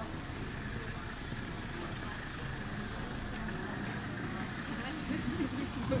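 Outdoor city street ambience: a steady low rumble of traffic with people talking, the voices getting louder near the end.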